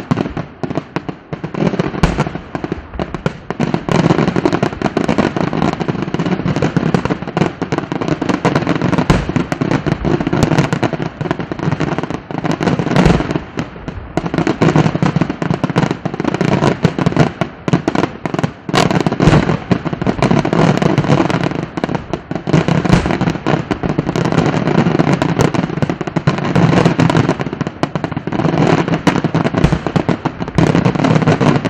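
Daytime aerial fireworks: a dense, continuous run of rapid bangs and crackling reports from shells bursting overhead, with no real pause.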